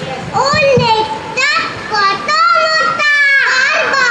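Young child speaking lines aloud in a loud, high-pitched voice, in short phrases.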